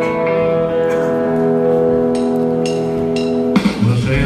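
A band holds one long sustained guitar chord, with a few cymbal hits in its second half, and then cuts off sharply just before the song goes on.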